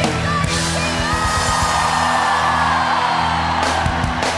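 Live worship band playing, with drums, cymbals and keyboard, and voices yelling over the music. A long held vocal cry runs from about a second in.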